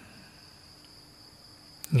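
Faint, steady high-pitched insect trill over a low hiss, unchanging through the pause. A single short click comes near the end, just before a man's voice resumes.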